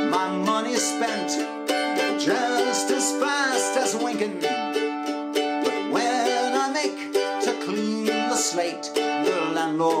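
Mandolin strummed in a steady rhythm, accompanying a man's singing voice in a sea-shanty-style folk song.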